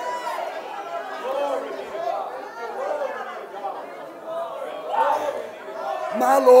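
A congregation's voices overlapping: several people speaking and calling out at once, with no one voice clear.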